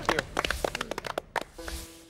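A small group of people clapping by hand: irregular, scattered claps that thin out and stop about a second and a half in. A steady low musical note comes in near the end.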